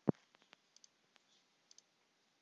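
A single sharp computer mouse click, followed by a few much fainter ticks.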